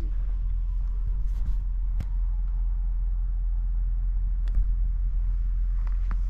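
Steady low wind rumble on the microphone, with a single sharp click about two seconds in as a putter strikes a golf ball for a long breaking putt.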